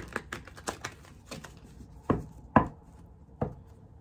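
A deck of cards being shuffled by hand, packets dropped from one hand onto the other, making a run of short card slaps and clicks. The louder slaps come about two, two and a half and three and a half seconds in.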